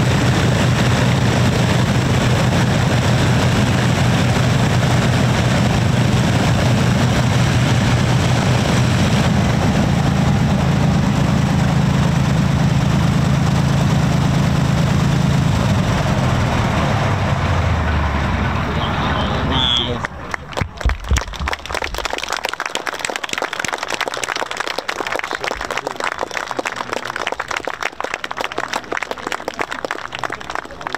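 Rolls-Royce Merlin piston aero engines of a WWII warbird running steadily, then winding down in pitch as they are shut down, falling silent about two-thirds of the way through. A quieter patter of many short claps and some voices follows.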